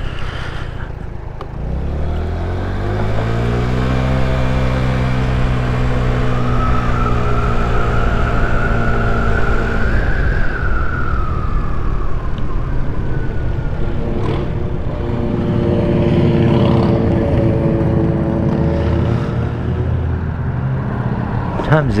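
Boom PYT Revolution 50cc scooter engine pulling away from a stop, its revs rising over a couple of seconds and then holding steady at cruising speed. A higher whine rises and falls in the middle. The engine eases off briefly and picks up again in the second half.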